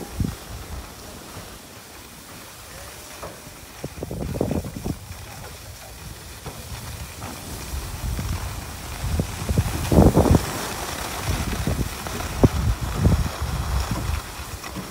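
Wind buffeting a phone microphone while sliding down a snow-covered ski slope, with a steady hiss of sliding over packed snow. Low rumbling gusts come in bursts about four seconds in and again from about nine seconds on, when the hiss also grows louder.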